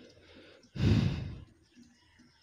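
A single loud exhale, like a sigh, close to the phone's microphone, lasting about half a second from about a second in and fading away.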